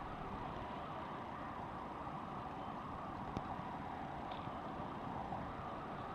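Steady outdoor background noise: an even, low hum with no distinct events, with one faint click about three and a half seconds in.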